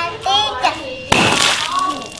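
A hanging balloon, struck with a toy hammer, bursts with a sudden loud pop about halfway in, followed by a short spray-like rush of sound lasting under a second; a child's voice comes just before it.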